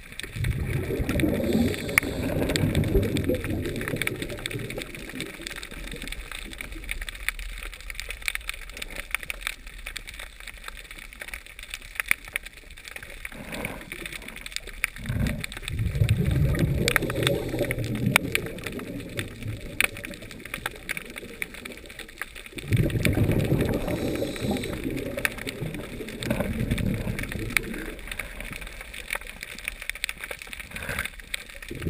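Underwater sound heard through a camera housing: three rushing bursts, each a few seconds long, of a diver's exhaled regulator bubbles, over a steady crackle of sharp clicks.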